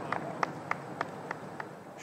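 Light, evenly spaced claps, about three a second, over a faint outdoor background after a holed putt.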